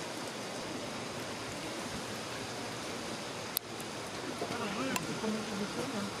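Faint, distant people's voices over a steady background hiss, with a sharp click about three and a half seconds in and a smaller one near the end.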